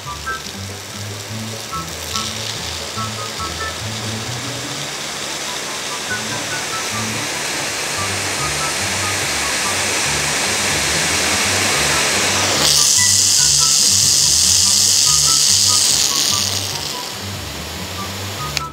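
High-pressure washer jet from a 0-degree nozzle spraying onto asphalt: a loud, steady hiss that grows louder and sharper for a few seconds about two-thirds of the way through. Background music plays underneath.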